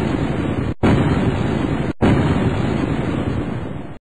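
Logo sting sound effect: loud explosion-like booms that start sharply, a new one about one second in and another about two seconds in, each rumbling on until the next, then cut off abruptly.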